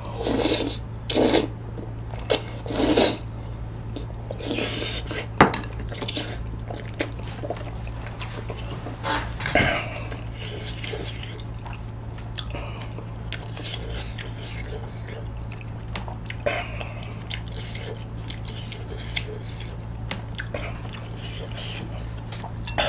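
Close-miked eating of spicy tteokbokki: several loud slurps in the first three seconds, then chewing with chopsticks clicking against the bowl, a sharp click about five seconds in, and softer clicks and mouth sounds afterwards.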